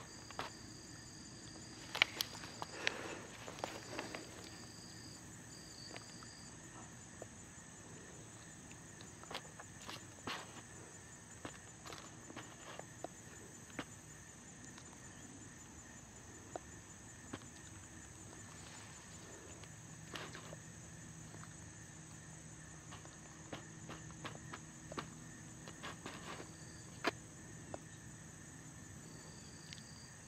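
A steady, high-pitched chirring of insects in the grass, with a second buzz that comes and goes. Scattered small clicks and rustles run through it, the sharpest about two seconds in and again near the end.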